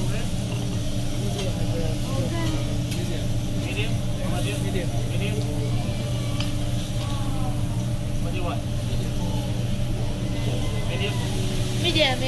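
Meat and vegetables sizzling on a teppanyaki griddle, with a metal spatula scraping and tapping on the steel now and then. A steady low hum and background restaurant chatter run underneath.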